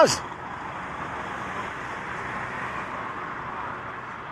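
Steady road-traffic noise, an even rush of vehicles with no single engine standing out.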